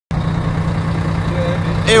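Coach's diesel engine idling steadily: an even low hum with a constant background rumble.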